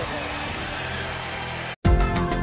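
Studio audience applause under the show's music, which stops dead near the end; after a split second of silence, different music starts abruptly.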